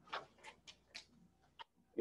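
A handful of faint, short clicks, about five, at uneven intervals in a quiet room.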